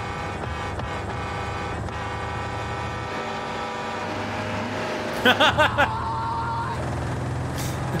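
A large truck's engine running steadily, a low hum with a steady whine above it, from a film soundtrack; a man's voice speaks briefly about five seconds in.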